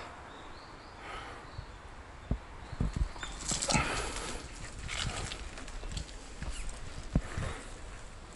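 Wheelchair rolling along a paved path: a low rumble with irregular knocks and rattles as the wheels jolt over bumps, busiest about halfway through.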